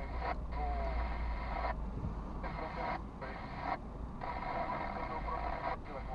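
A voice playing over the car's speakers, thin and narrow like a radio, coming in short stretches broken by abrupt gaps, over the car's low cabin rumble.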